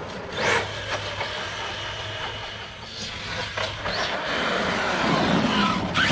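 Arrma Kraton V2 RC monster truck with a Hobbywing Max6 brushless system driving on asphalt. The motor whine and tyre noise rise and fall with the throttle in a few short bursts, about half a second in and again around the third and fourth seconds.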